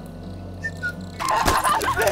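A man crying out and screaming in pain, loud and frantic, starting about a second in after a quieter stretch.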